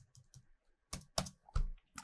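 Computer keyboard keystrokes while a terminal command is edited: a few faint taps, then several sharper key presses in the second half.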